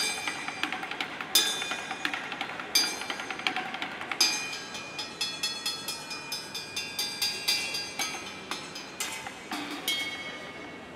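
Kitchen knives struck as percussion instruments, giving bright ringing metal clinks. Strong accents fall about every second and a half, with lighter quick taps between, and after about four seconds the strikes come thicker and faster.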